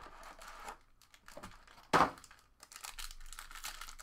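Foil trading-card pack wrappers crinkling and tearing as packs are handled and opened, with faint scattered crackles.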